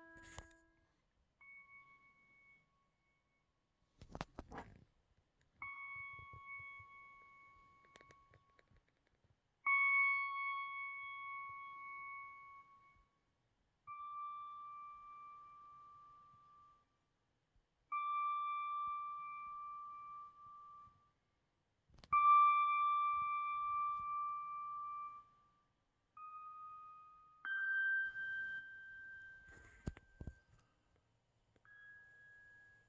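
Pedal steel guitar VST plugin sounding one sustained note at a time as the MPC's autosampler triggers and records each key, every note held a couple of seconds and fading before the next, the pitch stepping gradually higher. A short knock comes about four seconds in and another later on.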